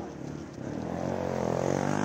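A drag race car's engine revving, its pitch climbing and getting louder through the second half.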